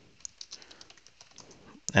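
Computer keyboard keys clicking in a quick run of light keystrokes as a short command is typed and entered.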